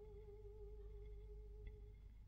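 A solo soprano voice holding one very soft, low sustained note with a slight waver. The note stops near the end.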